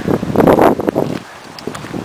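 Wind buffeting the camera's microphone in loud, rough gusts: one long gust through the first second, a brief lull, then another building near the end.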